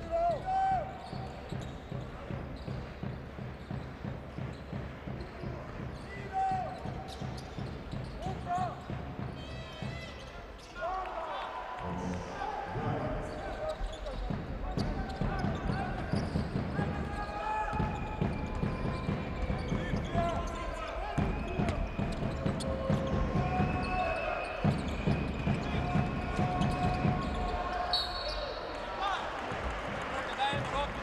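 Basketball arena game sound: crowd voices and chanting over the thud of a basketball being dribbled, with short sneaker squeaks on the hardwood court. The noise drops briefly about a third of the way in and then picks up louder.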